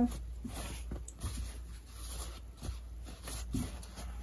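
Faint rustling and soft scattered taps of a sewn fabric circle being handled and smoothed flat by hand, over a low steady hum.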